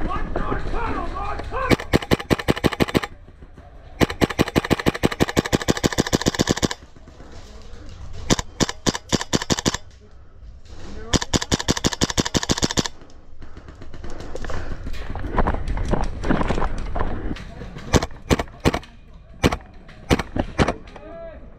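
KWA AKG-74M gas blowback airsoft rifle firing full-auto bursts, about seven or eight shots a second, with four bursts of one to nearly three seconds each, the second one the longest. Near the end come a few single shots.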